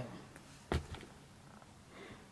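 Quiet room with one short thump about three quarters of a second in: a shoe being set down on the carpet.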